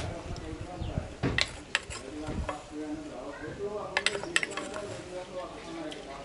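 A plastic spoon scraping and tapping against a wooden mortar and a plastic bowl while scooping out ground powder: a few sharp taps about a second and a half in and a quick cluster of them around four seconds.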